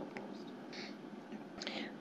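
Faint, low voices whispering and murmuring away from the microphones, over the room's quiet background.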